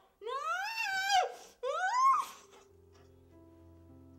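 A woman's two long, high wailing cries, each rising and then falling in pitch, as duct tape is pressed over her mouth. From about two and a half seconds in, low sustained music notes begin.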